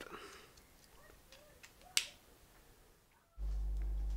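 Faint handling of a fine-tip drawing pen, then a single sharp click about halfway through as the pen's cap is pushed on. Near the end a steady low electrical hum starts.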